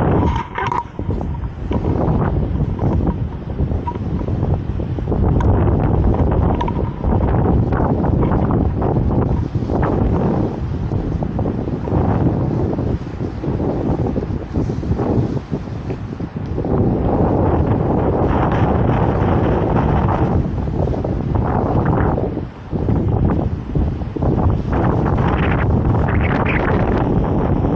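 Strong wind buffeting the microphone: a loud, low rumble that rises and falls in gusts, dipping briefly a few times.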